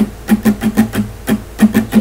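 Acoustic guitar strummed with the strings muted by the fretting hand: a quick, even, percussive strum pattern of about five strokes a second.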